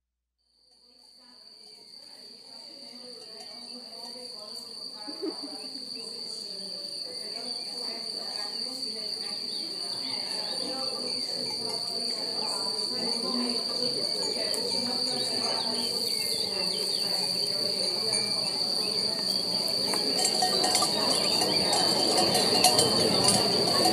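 Fade-in intro of the track: a steady high tone, with a fainter overtone above it, held over a busy, shifting background that swells slowly louder.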